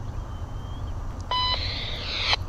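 A railroad scanner radio gives one short beep about a second in, then its squelch opens with a hiss, the start of an automated trackside defect detector broadcast. A low steady rumble runs underneath.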